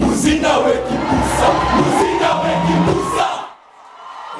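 A group of schoolboys singing and shouting together in a lively stage performance, with low thuds under the voices. The sound drops away suddenly about three and a half seconds in.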